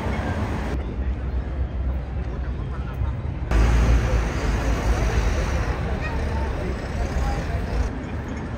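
Busy city street ambience: road traffic with a steady low rumble and the chatter of a crowd of people. The sound changes abruptly twice as the shots cut.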